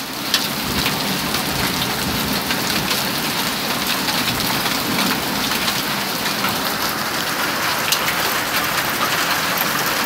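Heavy rain mixed with pea-sized hail pelting a wooden deck: a steady, dense hiss with a few sharper ticks of hailstones.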